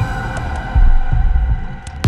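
Tense film soundtrack: a sustained droning chord over deep low pulses like a slow heartbeat, one swelling thud about three quarters of a second in.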